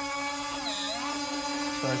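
Electric retract unit of an RC jet's main landing gear whining steadily as it pulls the wheel up into the well. The pitch dips briefly a little under a second in.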